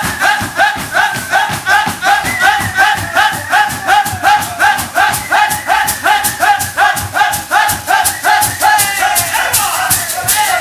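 Several men chanting a short phrase over and over in rhythm, about two and a half times a second, each shout falling in pitch, over fast-strummed acoustic guitar.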